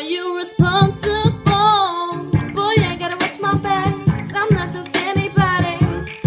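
A woman singing an R&B song over a backing track with a beat.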